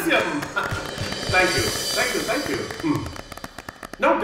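Mostly speech: a man talking, with background music under it and scattered short taps or knocks.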